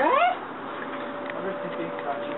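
A man's short surprised shout, sharply rising in pitch like an alarmed question, right at the start; it is the loudest sound here. A faint steady tone follows.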